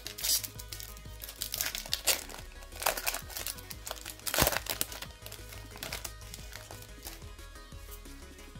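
Foil wrapper of a Pokémon booster pack being torn open and crinkled by hand: a run of sharp crackles, the loudest about four and a half seconds in. Quiet background music runs underneath.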